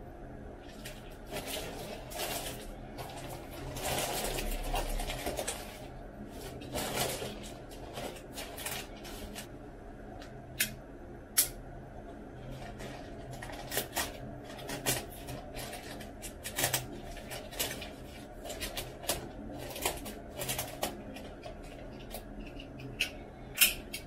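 Plastic courier mailer bag rustling and crinkling as it is handled, then many sharp clicks and crackles as it is slit open with a small pink cutter.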